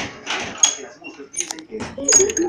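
A girl's breathy giggling close to the phone's microphone, then a few sharp clicks and knocks as the phone is handled and swung around.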